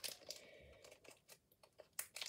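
Faint, scattered crinkling of a trading-card pack's wrapper being handled.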